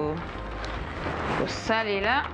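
A woman's voice, a word at the very start and another near the end, over a steady low hum.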